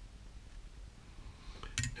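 Quiet room tone with a few faint, sharp clicks near the end, as small metal fly-tying tools are handled at the vice.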